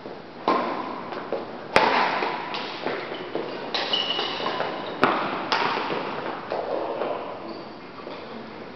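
Badminton doubles rally: rackets striking the shuttlecock in a string of sharp cracks, the loudest about two seconds in and at five seconds, each ringing on in a large echoing hall. Short squeaks between the strikes, typical of court shoes on a wooden floor.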